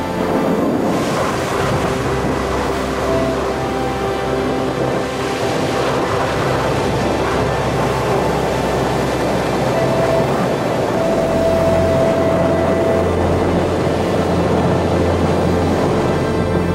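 Background music with long held notes, laid over the steady wash of ocean surf and wind on the microphone. A low wind rumble grows heavier in the second half.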